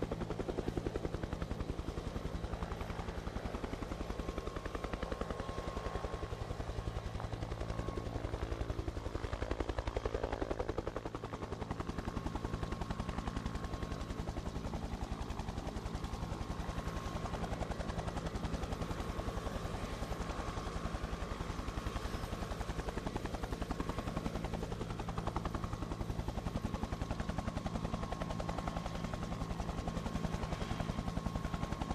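Helicopter sound running steadily: a fast, even rotor-blade chop with a thin steady whine above it. It is the helicopter sound bed laid over the live aerial feed by the broadcaster.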